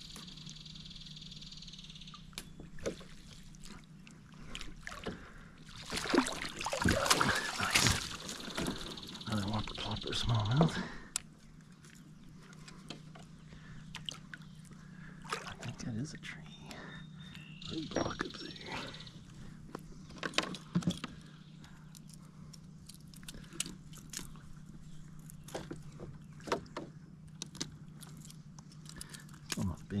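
Water splashing and knocking against a kayak while a hooked smallmouth bass is played to the boat and landed in a landing net, loudest for several seconds about a third of the way in, with scattered knocks afterwards.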